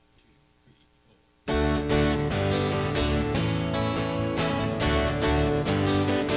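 Near silence, then about a second and a half in the song's instrumental intro starts abruptly: strummed acoustic guitar with other instruments over a steady beat.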